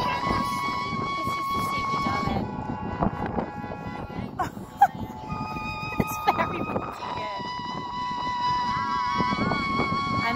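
Synthesized notes from a plant choir biodata device whose electrodes are clipped to a piece of washed-up seaweed: sustained tones that change pitch every couple of seconds. A few short taps and wind noise on the microphone run underneath.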